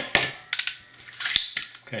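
Desert Eagle pistol's steel slide being pulled back and locked open to show the chamber empty: a few sharp metallic clicks and clacks, the sharpest about halfway through.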